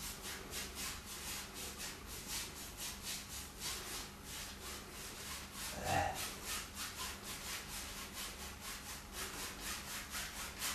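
A one-inch paintbrush scrubbing back and forth on canvas, blending phthalo blue into a wet sky in quick, even strokes, about four or five a second.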